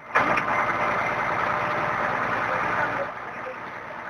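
Fire truck engine running steadily at close range, dropping noticeably in level about three seconds in.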